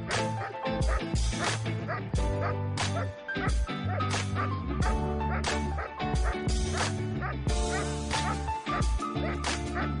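German Shepherd barking repeatedly in a bark-and-hold protection exercise, guarding a helper hidden behind a blind. The barking sits over background music with a steady beat.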